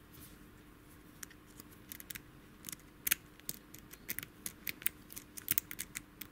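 Rake pick scraping and clicking over the pin tumblers of a brass padlock held under tension: light, quick clicks, sparse at first and coming more often from about two seconds in. The lock is being raked open and has no security pins.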